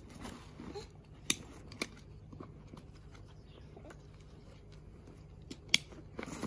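Bushbuck Destroyer hunting pack being handled: faint rustling of its fabric and straps, with three sharp clicks, the loudest near the end.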